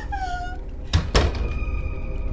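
A short falling cry, then two heavy thuds about a fifth of a second apart, followed by a steady high music tone.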